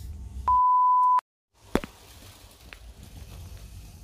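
A single steady high beep, a pure tone under a second long, cut in as an editing sound effect and followed by a moment of dead silence. Then a sharp click and faint room noise.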